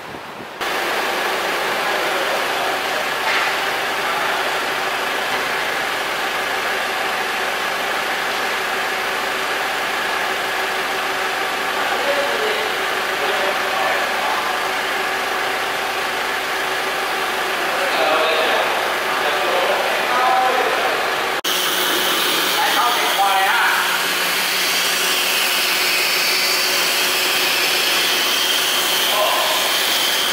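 Forklift engine running steadily with people talking in the background. The sound shifts abruptly about two-thirds of the way through and then carries on steadily.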